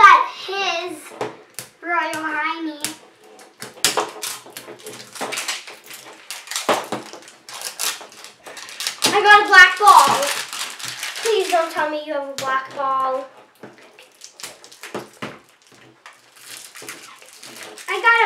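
Crackling and tearing of plastic wrapper layers being peeled off toy surprise balls by hand, in a run of short crinkles and rips, with brief child voices in between.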